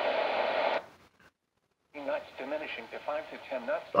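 Capello NOAA weather radio's speaker giving a steady static hiss on an empty channel (162.475 MHz). The hiss cuts off under a second in, and after about a second of silence a weak weather broadcast voice comes through the speaker once the radio is tuned to 162.500 MHz.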